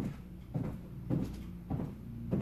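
7-inch high heels stepping on a squeaky hardwood floor, about two steps a second. Each heel strike is followed by a short low creak from the boards.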